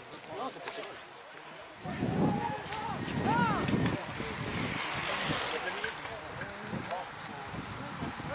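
Roadside spectators' voices and shouts as a bunch of racing cyclists rides up past, with a rising hiss of tyres and freewheels about five seconds in.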